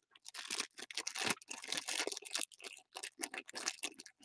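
Shiny foil blind bag of a Funko Mystery Mini crinkling and rustling in the hands as it is worked open, a quick irregular run of small crackles.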